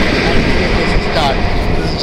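A man's voice over a loud, steady low rumble of vehicle noise.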